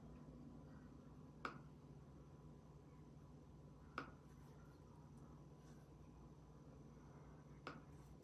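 Three short, sharp taps a few seconds apart, from a fingertip on a phone screen as a word is typed into an app, over a faint steady hum.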